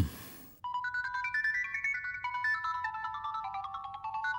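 Mobile phone ringing with an electronic ringtone melody of short stepped notes, starting about half a second in: an incoming call.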